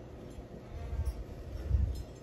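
Low rumbling buffets on the microphone, with two stronger swells about a second in and near the end.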